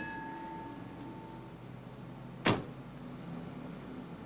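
A single sharp slam of a car door about two and a half seconds in, over a low steady background. Before it, a ringing tone, likely the level-crossing bell, fades away in the first second and a half.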